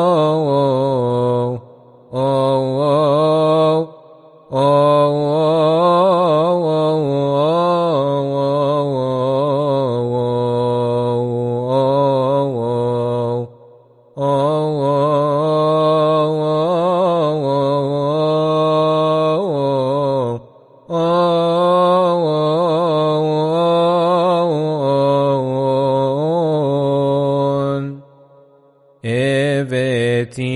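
Solo male voice chanting Coptic liturgical chant, a psalm verse sung in long melismatic phrases broken by short pauses for breath.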